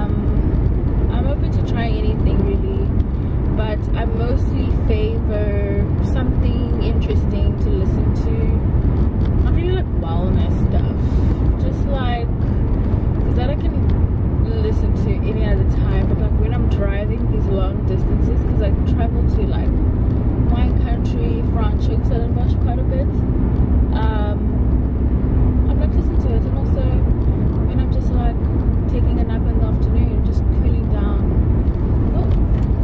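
Steady low rumble of a moving car heard inside the cabin, road and engine noise, with a woman talking over it.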